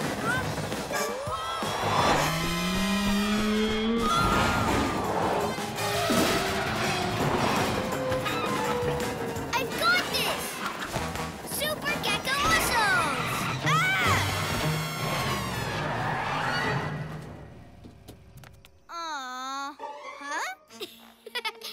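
Cartoon action-scene soundtrack: music mixed with vehicle and crash sound effects and characters' wordless yells. It dies down about three seconds before the end, where one wavering, voice-like sound comes in.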